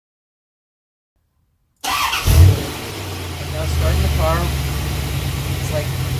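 A 1992 C4 Corvette's V8 starts about two seconds in, flares briefly, then settles into a steady idle.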